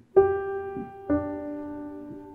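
Piano played slowly: one note struck just after the start, then a lower note or chord about a second later, both left to ring and fade. It is the opening of a melody drawn from the peaks of water vapour's spectrum.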